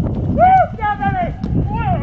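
Horses galloping and bucking on grass, their hoofbeats a dull low thudding. Over them come several short, high-pitched calls from a person's voice, each rising and falling.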